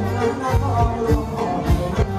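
Live Thai ramwong band music: a drum kit keeps a steady beat of about three strokes a second under sustained melody.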